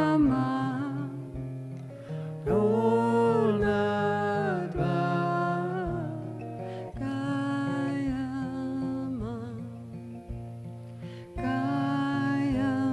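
Slow devotional mantra chant: a woman singing long, held notes over a played acoustic guitar.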